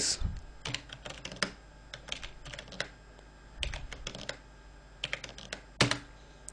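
Typing on a computer keyboard: quick clicking keystrokes in four short bursts with pauses between them, as a terminal command is entered.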